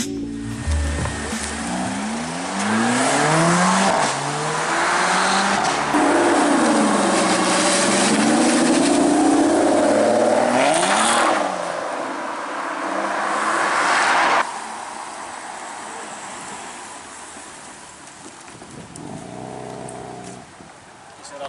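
Sports cars revving hard as they pull away one after another. A Mercedes-AMG CLA 45's engine rises in pitch through several quick upshifts, then an Aston Martin DBS V12 revs loudly and wavers as it leaves. The sound cuts off suddenly just past the middle, leaving quieter engine noise.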